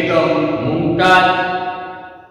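A man's voice speaking in a drawn-out, sing-song, chant-like delivery: two long held phrases, the second beginning about a second in and fading away near the end.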